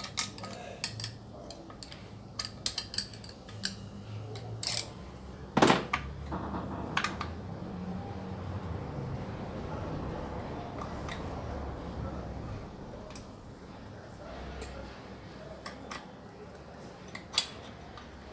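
Small metal hand tools (a screwdriver and hex key) clinking and clicking against the bolts and muffler of a Stihl MS 660 chainsaw during disassembly. There are many quick clicks, a louder knock about six seconds in, a quieter stretch of handling noise, and a few more clicks near the end.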